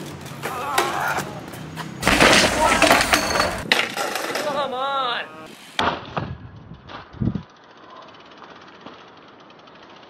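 Raw sound of BMX riding: sharp knocks and thuds of a BMX bike hitting the ground, with voices among them. After a cut about six seconds in the sound turns duller and quieter, with a couple more thuds before low ambience.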